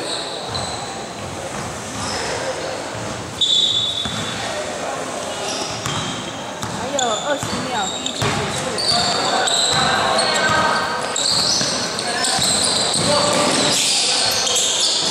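Basketball bouncing on a gym floor as play restarts, among players' and spectators' voices echoing in a large hall, with one sharp loud knock about three and a half seconds in.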